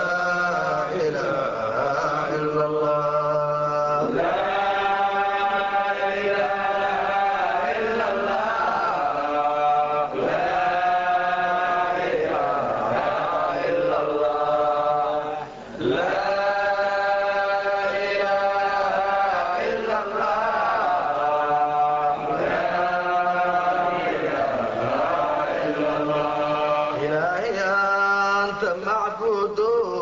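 Unaccompanied male voice chanting an Arabic Sufi dhikr in long, drawn-out melodic phrases, with a brief break about halfway through.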